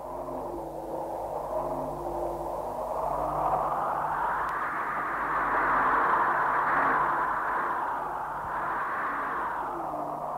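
A rushing noise that fades in at the start, swells toward the middle and eases off again, over a faint low hum.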